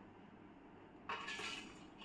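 Spices and chopped ingredients poured from a small plastic bowl into a steel mixer-grinder jar. A dry rustling, sliding patter starts about a second in, after a near-quiet start.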